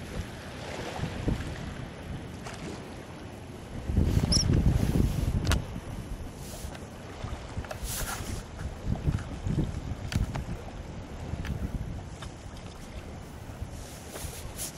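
Wind buffeting the microphone over open water, in uneven low gusts, with the strongest gust about four seconds in.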